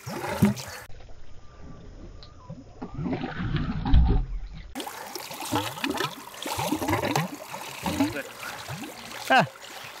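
Muddy water, air and soil gushing in irregular spurts from an airlift drilling discharge hose and splashing onto a perforated metal sieve.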